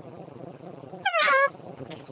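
A single high, meow-like call that falls in pitch, about a second in, lasting about half a second.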